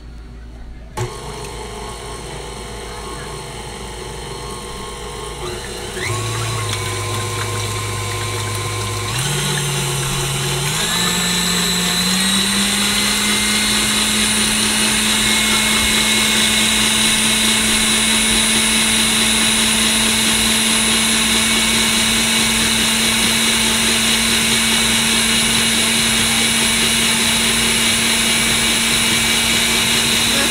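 Stand mixer with a wire balloon whisk beating eggs in a stainless-steel bowl. It switches on about a second in and its motor hum rises in steps as it is turned up through its speeds over the next ten seconds or so, then runs steadily at high speed.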